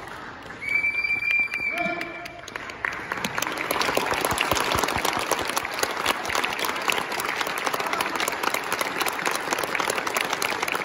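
A steady high tone lasting about two seconds, then an audience applauding for the rest of the clip as the kendo match ends.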